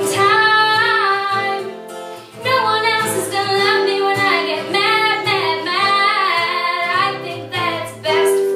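A young woman singing a pop song while strumming an acoustic guitar, with a brief pause in the voice about two seconds in.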